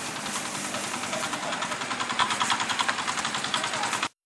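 An engine idling, with a fast, even pulse of about eight to ten beats a second.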